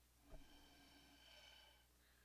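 Near silence, with a faint breath blown through a drinking straw onto wet alcohol ink, lasting about a second and a half.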